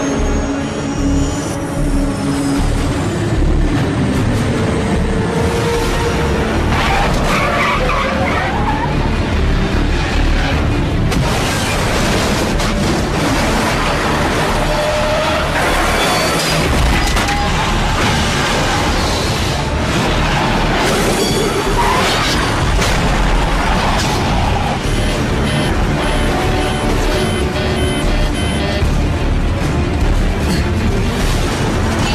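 Film soundtrack of an airliner's emergency landing: dramatic orchestral music over continuous heavy rumble and tyre-skidding effects as the landing gear touches down.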